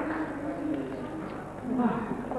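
Indistinct talk among a crowd of guests at a low murmur, as applause dies away at the start; a single voice rises briefly near the end.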